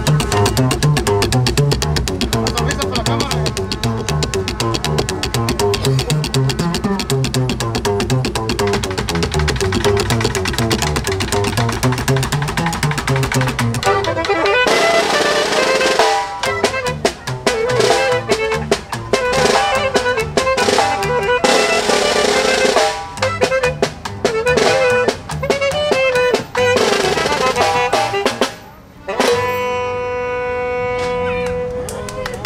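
A norteño band playing, led by a tololoche (Mexican upright bass) slapped in the chicoteado style, its strings snapping against the fingerboard under a fast pulsing bass line, with snare drum. About halfway through, the bass line drops out and snare drum rolls alternate with held saxophone and accordion notes.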